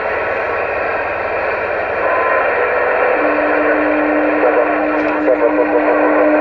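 Uniden Grant LT CB radio's speaker putting out steady static on channel 6 (27.025 MHz). About three seconds in, a steady low tone joins the hiss, and a few brief warbles come through near the end.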